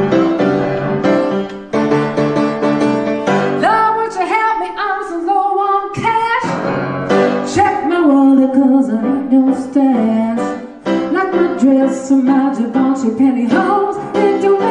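Upright piano playing a blues tune, with a woman's voice singing over it from about three seconds in.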